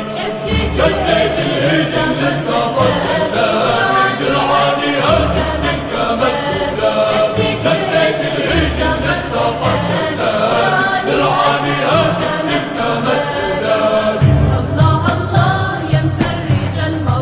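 Voices singing a chant-like Arabic song in chorus, with a deep low note that swells in every few seconds.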